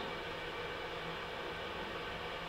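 Steady room noise: an even low hiss with a faint low hum, and no distinct events.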